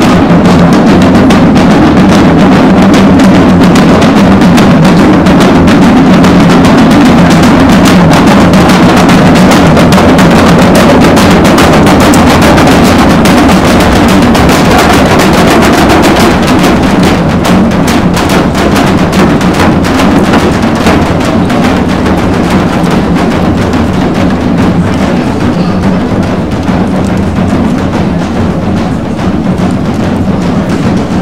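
Parade drummers beating marching drums, bass and snare, in a steady stream of strokes over a continuous low tone.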